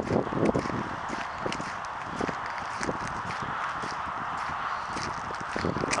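Footsteps crunching on a gravel path, uneven strokes about every half second, over a steady rush of wind.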